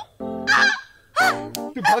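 A man's wordless comic exclamations: two short cries about a second apart, over light background music.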